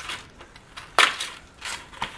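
Cardstock pages being handled and slid into a slit in a paper accordion hinge: soft paper rustling, with one sharp paper snap about halfway through.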